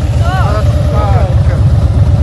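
Harley-Davidson motorcycle's V-twin engine running with a low, pulsing beat as the bike rides off carrying a passenger, with a voice calling out over it.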